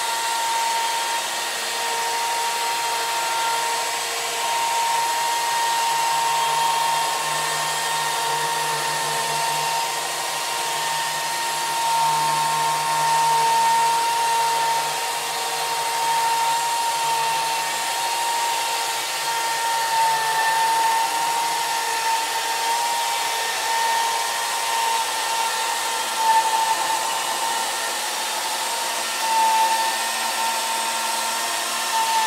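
Electric chainsaw unit of a Logosol chainsaw mill ripping lengthwise through a log: a steady motor whine over the noise of the chain cutting, the pitch sagging slightly now and then under load.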